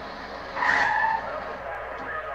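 Car tyres screeching once, briefly, about half a second in: a film soundtrack's car scene over a low background hum.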